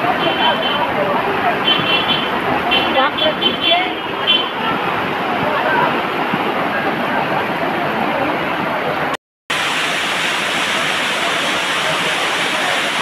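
Floodwater rushing down a street in a steady, loud rush, with people's voices over it in the first half. The sound cuts out briefly about nine seconds in, then the rush of water comes back closer and fuller.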